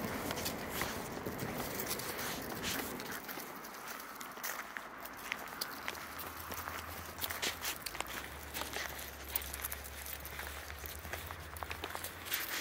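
Footsteps on a gravel path: a person walking, with an irregular run of small crunches and clicks of stones underfoot.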